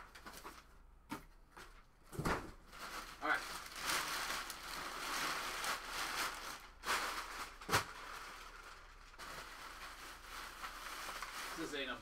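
Cardboard shipping box and packing material being handled as a case is unpacked: continuous rustling and crinkling of packaging, with a sharp thump about two seconds in and another near eight seconds.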